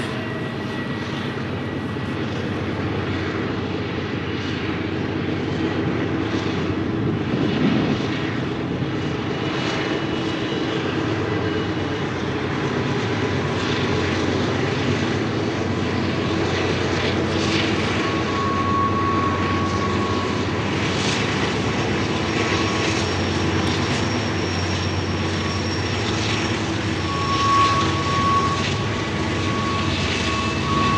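Diesel locomotives of a long BNSF intermodal stack train, their engines droning steadily as they work round a tight curve. Brief high squeals come and go in the second half.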